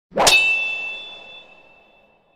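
A single metallic clang, struck once about a quarter second in, then ringing on with a high tone that fades out over about two seconds. It is the sound effect of a logo intro.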